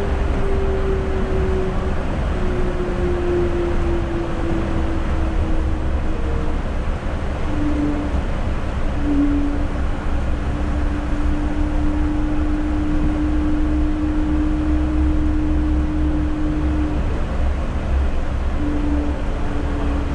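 Yurikamome rubber-tyred automated guideway train running on its elevated track, heard from inside the car: a steady low rumble with a whine that slides slowly down in pitch over the first several seconds, drops out briefly around seven to nine seconds in, then holds level.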